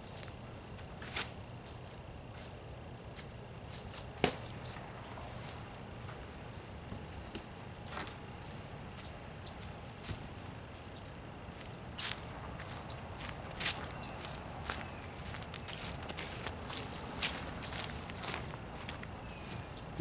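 Scattered light knocks, taps and scuffs of rigid foam-board insulation covers being lifted off wooden beehives and set down, with footsteps on grass and leaves; the sharpest knock comes about four seconds in.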